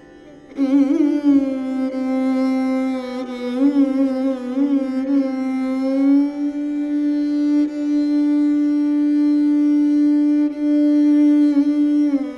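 Taus (mayuri veena) bowed solo playing raag Bageshri. A phrase comes in about half a second in with sliding, wavering ornaments, then settles into one long, steady low note that is held until near the end.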